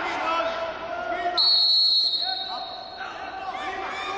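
A referee's whistle gives one shrill, steady blast of about a second, starting about a second and a half in and stopping the wrestling action, over voices calling out in a hall.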